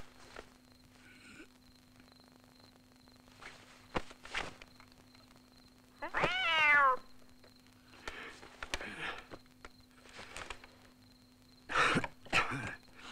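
A cat meows once, about six seconds in: a single call about a second long, falling in pitch. A few short, soft rustling noises come before and after it over a faint steady hum.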